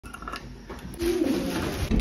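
Faint clinks of a bunch of keys lifted off a wall hook near the start, then a pigeon cooing, a low gliding call that begins about a second in and is the loudest sound.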